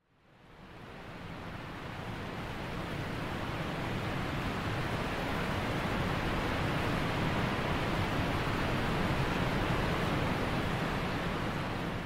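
Waterfalls rushing: a steady, even roar of falling water that fades in over the first two seconds and then holds.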